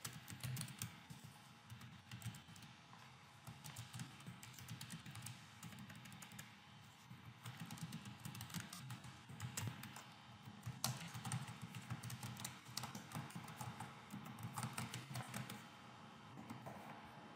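Typing on a computer keyboard, faint: runs of quick key clicks with brief pauses between them.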